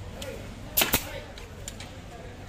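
Pneumatic staple gun firing twice in quick succession a little under a second in, driving staples through a leatherette seat cover, with a few fainter clicks around it.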